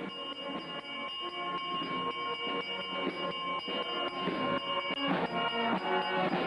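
A handbell rung continuously, its ringing tones held steady under repeated strikes. Near the end a marching band with drums grows louder as it comes closer.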